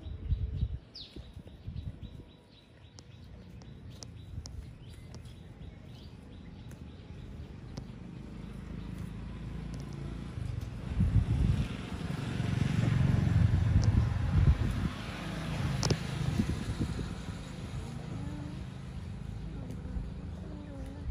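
A motor vehicle passing by: a rumble with a rushing noise that grows louder from about ten seconds in, peaks, then fades a few seconds later. A few short bird chirps sound near the start.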